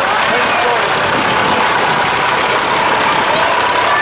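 Vintage Fordson tractor engine running slowly and steadily as it passes close by, with crowd voices mixed in.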